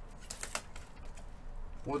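A few faint, sharp clicks over quiet room noise, then a man starts to speak near the end.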